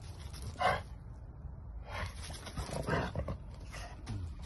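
Bully-breed dog giving a few short vocal sounds, the loudest about half a second in and two more in the second half, over a low steady rumble.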